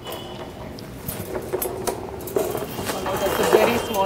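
Wire-mesh cage rattling and clinking as a man crawls into it, with a string of light knocks and clanks that are busiest in the second half.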